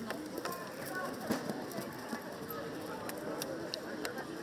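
Outdoor crowd murmur: scattered voices of spectators talking at the ringside, with a few faint knocks.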